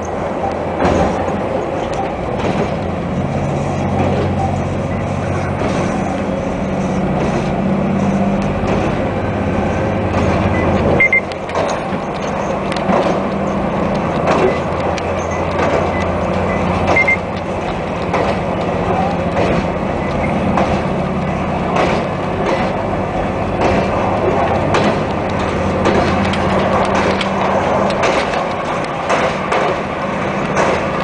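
KiHa 261 series diesel express railcar running at speed, heard from the front of the leading car: a steady diesel engine drone under the clack of wheels over rail joints. The engine note eases off about eleven seconds in and picks up again later.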